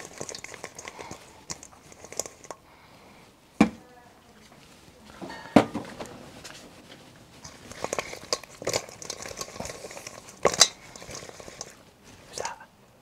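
Sauce-coated chicken wings being tossed in a stainless steel mixing bowl: irregular wet, sticky crackling and squelching, broken by a few sharp knocks of the metal bowl, the loudest about three and a half and five and a half seconds in and another near ten and a half seconds.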